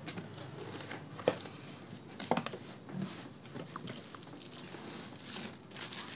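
Cardboard box being opened and unpacked by hand: scattered light knocks and scrapes of the cardboard flaps, with the crinkle of plastic wrapping around the papers inside.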